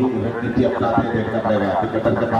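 Speech: a voice talking without a break, live commentary on the football match.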